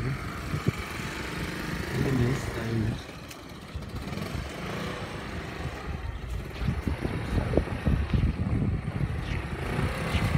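A motor scooter engine running close by, with irregular low rumbles through the second half.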